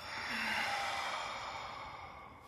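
A long, deep breath out through the mouth, like a sigh, swelling about half a second in and then fading away. It is the exhale of a guided deep breath.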